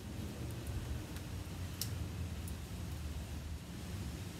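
Faint clicks of wax crayons knocking together in a cardboard box as one is picked out, over a low, steady background rumble.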